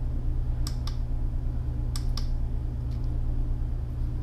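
Push buttons on a NextLight Pro Series grow-light controller clicking a few times as its settings menu is scrolled, over a steady low hum.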